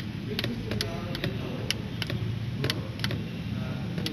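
Tactile push buttons on a trainer kit's keypad clicking as a password is keyed in: several sharp clicks at irregular intervals, over a steady low background rumble.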